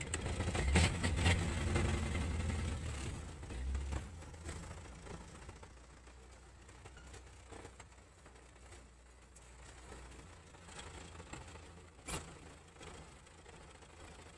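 Truck engine heard from inside the cab, pulling away in first gear: a louder low hum for the first four seconds or so, then settling to a quieter steady run. A single sharp click comes near the end.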